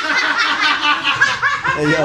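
A group of people laughing together, several voices overlapping in quick repeated bursts.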